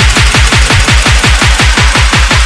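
Electronic dance music with a rapid roll of deep kick-drum hits, about eight a second, the kind of build-up roll that leads into a drop.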